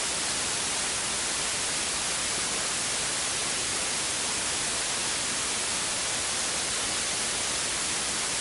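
Steady hiss of static with no change in level or pitch, masking any sound from the room.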